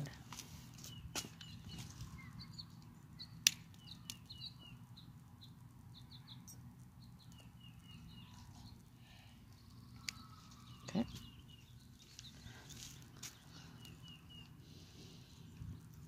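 Small birds chirping again and again in the background, faint, with a few sharp clicks, the loudest about three and a half seconds in.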